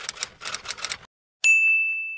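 Typewriter sound effect: a rapid run of key clicks for about a second, then a single high bell ding that rings on and fades.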